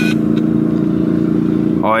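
A boat motor idling steadily, an even low engine hum that does not change in pitch.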